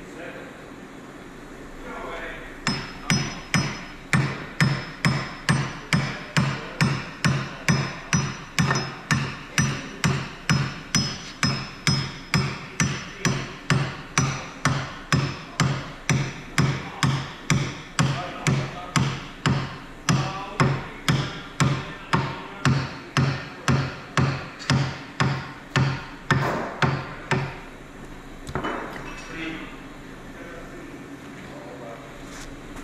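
Hammer blows on steel, driving the kingpin and its bearings into the steer-axle knuckle of a 1983 Clark forklift. Steady rhythm of about two blows a second with a metallic ring, starting about three seconds in and stopping a couple of seconds before the end.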